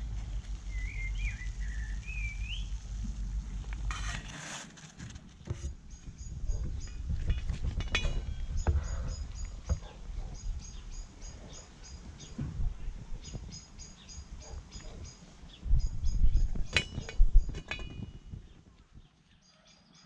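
Birdsong: a bird sings short high notes repeated in quick runs, over a low, uneven rumble, with a few sharp knocks that are loudest near the end.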